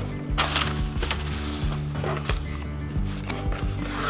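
Background music with steady low notes, over the rustle and scrape of a paperboard box being handled and lifted out of a cardboard box, loudest about half a second in and again past two seconds.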